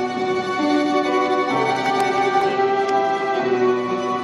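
Orchestral accompaniment of a stage musical playing a slow instrumental passage with no singing: held chords that change three times.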